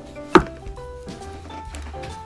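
A single sharp knock on a plastic cutting board about a third of a second in, with a short ring after it, over soft background music.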